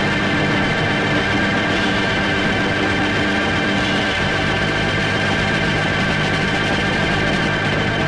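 Late-1960s rock music played from a vinyl LP: a loud, sustained chord held with steady tones, the bass note shifting about halfway through.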